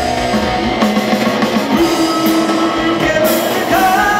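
Heavy metal band playing live: electric guitars and a drum kit, with a cymbal crash about three seconds in and singing coming in near the end.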